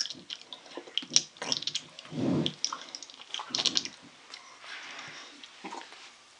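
Close-miked wet mouth sounds of eating sticky honeycomb: irregular lip smacks, tongue clicks and squelches, several a second.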